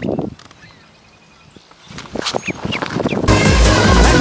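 A duckling peeping as it runs, with footsteps on concrete building up over the second half. Loud electronic dance music cuts back in about three-quarters of the way through.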